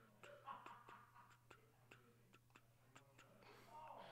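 Faint typing on a computer keyboard: irregular light clicks, several a second, over a low steady hum.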